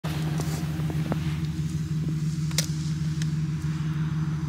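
Vehicle engine idling steadily, with a few light clicks and one sharper tick about two and a half seconds in.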